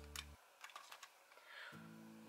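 Near silence with a few faint clicks and taps from a small plastic Polly Pocket toy compact being handled and set down. A steady low background hum cuts out about a third of a second in and returns near the end.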